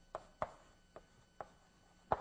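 Chalk writing on a blackboard: four short, sharp taps of the chalk against the board as a short formula is written.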